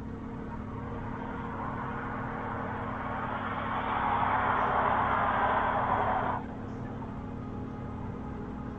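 Background music, a low steady drone. A rushing noise builds over it for several seconds and cuts off suddenly about six and a half seconds in.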